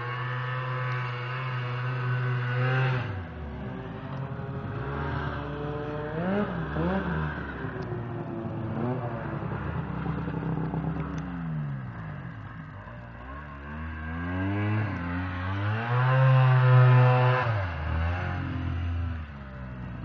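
Two-stroke snowmobile engines: a steady engine note for the first few seconds, then sleds revving up and down as they ride around. The loudest rev comes about 16 seconds in. One of the sleds, an XLT, is running with a hole in one piston.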